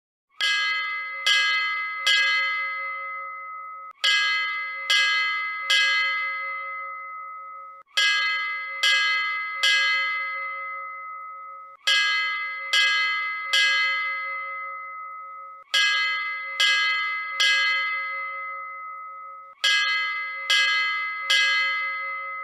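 A bell rung in sets of three quick strikes, 'ding-ding-ding', six sets about four seconds apart, each strike ringing on and fading.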